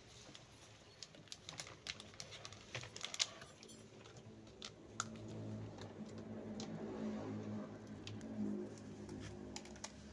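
Light, irregular clicking and tapping of plastic bucket lids and net-pot cups being handled and fitted, busiest in the first half. In the second half a low hum rises and peaks near the end.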